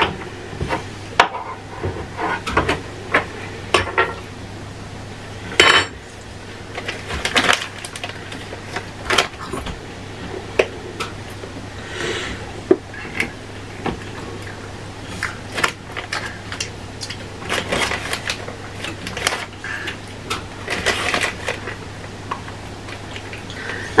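Scattered clinks, knocks and clatter of kitchen dishes and utensils on a counter, at irregular intervals, over a faint steady low hum.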